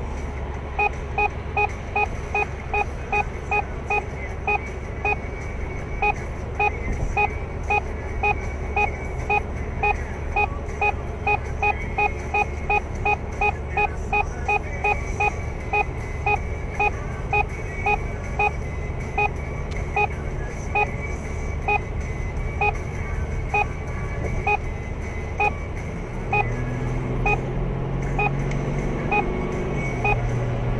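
In-car electronic warning beeps, short tones at about two a second, from a radar and speed-camera warning device, over steady road and engine noise in the cabin.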